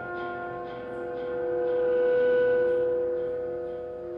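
Live experimental music from guitars, trumpet, saxophone and electronics. A long held tone swells to its loudest about halfway through and then fades, while repeated picked guitar notes die away in the first second or so.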